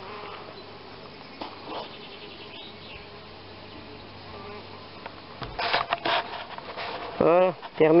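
An insect buzzing steadily, with a short patch of rustling and knocks a little past the middle, before a man's voice comes in near the end.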